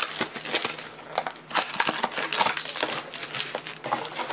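Clear plastic shrink-wrap being torn off a sealed trading-card box and crumpled by hand: a busy, irregular crinkling and crackling.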